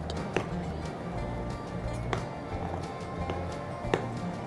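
Background music, with a few light clicks of a metal spoon against a glass mixing bowl as dough is stirred.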